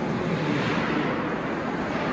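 Steady, fairly loud background drone with no distinct events.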